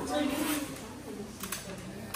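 A small child's voice talking briefly, followed by a couple of light clicks about a second and a half in.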